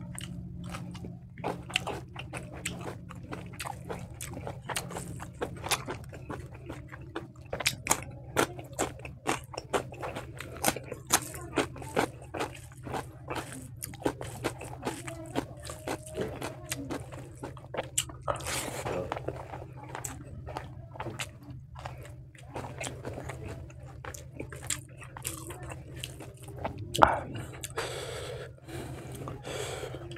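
Close-miked eating: wet chewing and biting of spicy pork ribs and rice eaten by hand, a steady run of short clicks and crunches, over a steady low hum.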